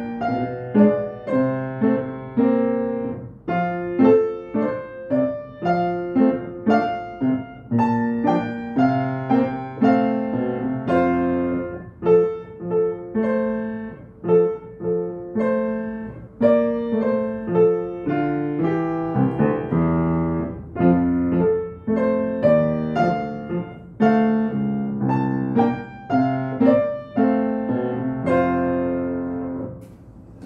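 Grand piano played four hands as a duet, a quick run of struck notes and chords in a steady rhythm. The piece ends right at the end, where the sound falls away.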